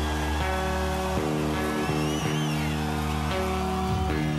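Heavy metal band playing live with electric guitars and bass holding chords that change every second or so, over drums, with no singing. A high tone glides up and down above the band near the middle.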